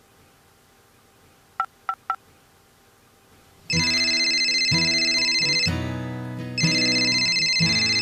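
Three quick cell-phone keypad beeps, then a phone's loud musical ringtone plays in two long bursts with a short break between them, the call going unanswered.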